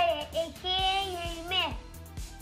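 A high, child-like voice sings a line of the two-times table, holding one long note, over background music with a steady beat. The music carries on alone near the end.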